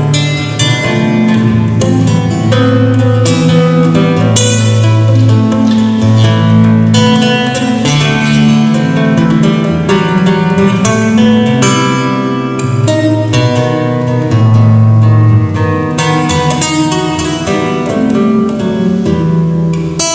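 Solo acoustic guitar played as an instrumental: plucked melody notes over a moving bass line, continuous throughout.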